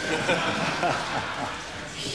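A man's voice speaking faintly over a steady hiss.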